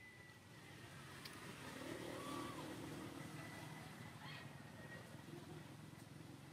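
A motor vehicle passing at a distance, faint, its engine swelling to a peak about two seconds in and then fading.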